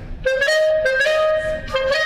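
A clarinet plays a quick phrase of short, separated notes around one or two pitches, each with a sharp start, the grace notes given a crisp, percussive 'ping'.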